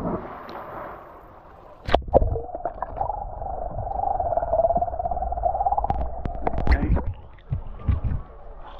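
A person plunging feet-first into deep water off a cliff: a splash at the start, then the camera goes under with a couple of sharp knocks. The underwater sound is muffled, with a wavering hum and scattered clicks and gurgles from the jumper's rising bubbles, until the camera surfaces near the end.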